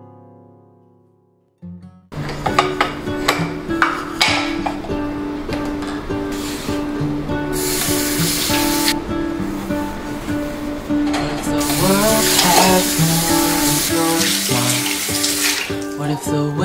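Background music fades out and, after a moment of near silence, a new piece starts about two seconds in. Under it a kitchen tap runs over dishes being washed by hand, loudest in two stretches in the second half.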